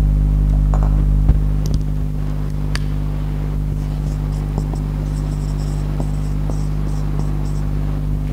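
Marker pen writing on a whiteboard: a run of short, quick scratchy strokes in the second half, over a steady low electrical hum.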